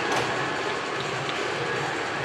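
Steady ice-arena background noise during a stoppage in play, with one short click near the start.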